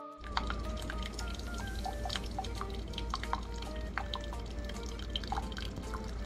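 Single-serve coffee maker brewing, coffee pouring and dripping into a ceramic mug over a low steady hum from the machine.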